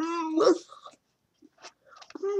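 A young woman's voice: drawn-out, strained vocal sounds of speech affected by cerebral palsy, ending about half a second in. The rest is near silence apart from one faint click.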